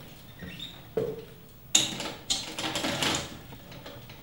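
Rattan sofa creaking and clothes rustling as a man shifts his weight and leans over on it: a knock about a second in, then a louder stretch of creaks and rustles for about a second and a half.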